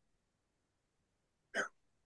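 Dead silence broken once, about one and a half seconds in, by a single short vocal sound from a person.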